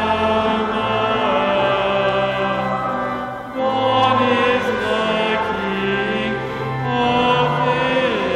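Congregation singing a Christmas carol over sustained accompanying low notes, with a brief pause between lines about three and a half seconds in.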